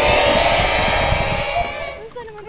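A group of voices shouting together in one long, loud, held cry that cuts off near the end.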